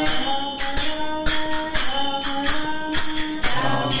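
Voices singing a Tamil devotional bhajan to a steady beat of small metal hand cymbals struck about twice a second.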